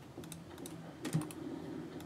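A handful of quick, light clicks and key taps from a computer mouse and keyboard.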